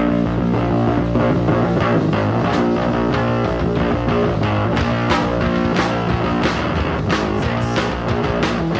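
Rock band playing live with electric guitar, bass and drums, a steady instrumental passage with regular drum hits.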